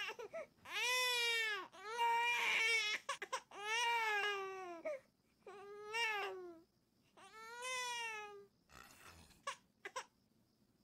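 Infant crying in about five separate cries, each roughly a second long and arching up and down in pitch, while its nose is being cleared with a nasal aspirator.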